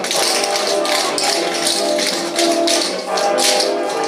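Many tap shoes clicking on a wooden floor as a group taps steps together, over swing music.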